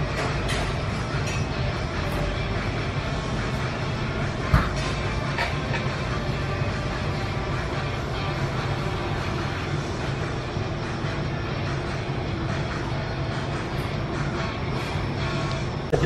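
Steady low-pitched hum of restaurant room noise, with a single short knock about four and a half seconds in.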